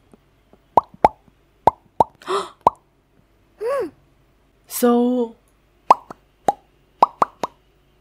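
Lip pops from a mouth close to the microphone: about a dozen sharp pops in uneven clusters, with a few short voiced sounds in between around the middle.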